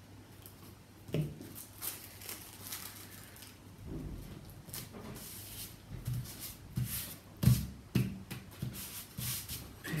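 Glue stick rubbing along paper edges, then tissue paper and card being handled and pressed down on a tabletop: scattered rustles and light taps, with two sharper knocks near the end.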